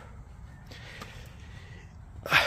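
Quiet steady background noise with a faint low hum, and a small click about a second in.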